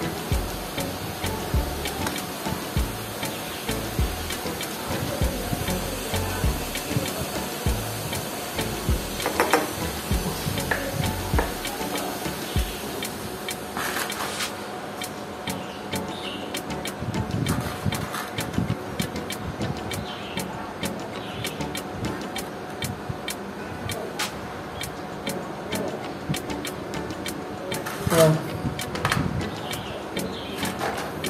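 Small clicks and light knocks of a motorcycle carburetor and its metal parts being handled and taken apart by hand, with irregular low thumps of handling noise in the first half and many short sharp clicks in the second half.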